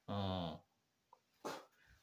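A man's short, low voiced sound, a hum or grunt of about half a second, then a brief breath about a second and a half in.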